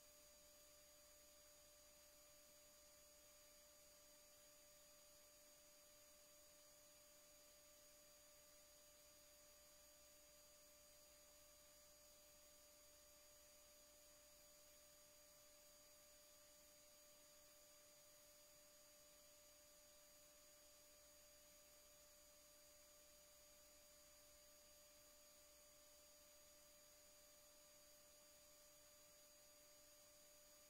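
Near silence: a faint, steady hum with a few fixed tones over low hiss.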